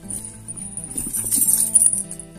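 A bunch of metal keys on a keyring jingling as they are lifted out of a handbag, building up and loudest near the end, over steady background music.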